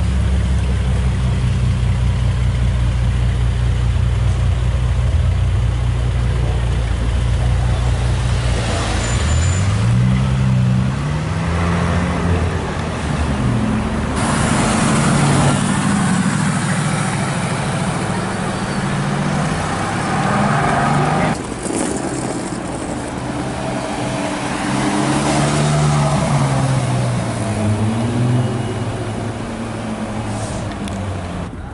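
Supercar engines one after another: a Bentley Continental GT Speed idling steadily and low for about the first nine seconds, then a Mercedes-AMG GT S pulling away with the engine note rising and dropping through gear changes. In the last part another car's engine rises and falls again as it accelerates.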